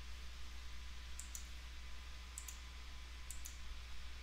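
Computer mouse clicking: three quick pairs of faint clicks, about a second apart, over a low steady hum.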